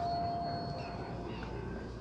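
A shop's electronic entry-door chime ringing on as one steady tone that fades out about a second in, followed by low room noise.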